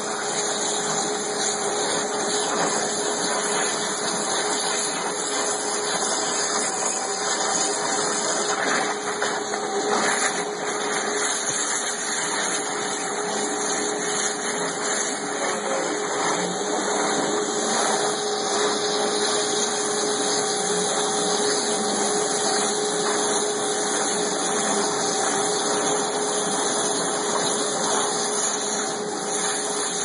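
Waterjet cutting machine running: a steady hiss of high-pressure water with a steady tone underneath.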